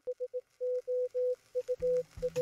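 Morse code beeps on a single steady tone: three short beeps, then three long ones, then more short and long beeps. A low hum comes in under them near the end.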